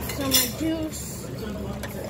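A glass pitcher clinking against a drinking glass while a drink is poured into it: one sharp clink about a third of a second in and a fainter one near the end, over background voices.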